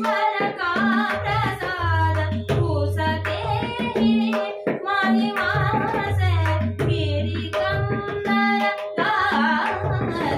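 A woman singing a Marathi natya geet in raag Todi, with long, ornamented, wavering melodic lines. She is accompanied by tabla playing Ektal: deep, sustained bayan strokes alternate with ringing dayan strokes in a steady cycle.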